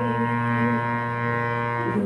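Harmonium playing a song melody over a steady low drone, holding one reedy note for most of the time and moving on to the next note near the end.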